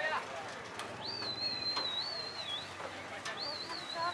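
Two long, high, wavering whistles, the first lasting nearly two seconds and the second shorter, over faint background noise.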